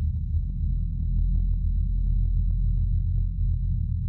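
Outro music: a deep, steady low drone with light, irregular ticking over it.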